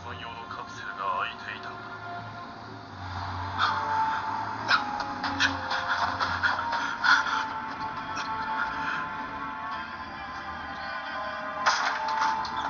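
Anime soundtrack, music and spoken dialogue, playing from the Samsung Galaxy Player 5.0's built-in speaker. It is punctuated by short sharp sounds.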